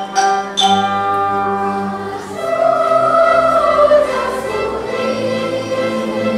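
A children's choir singing with a student orchestra, in long held notes over a low bass line that comes in just under a second in.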